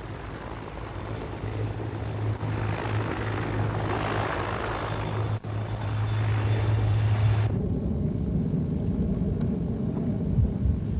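Sikorsky CH-53 heavy transport helicopter, twin-turbine, running close by with a steady low drone from its rotors. The sound swells toward the middle and drops out for a split second about five seconds in. At about seven and a half seconds it changes suddenly to a lower rumble.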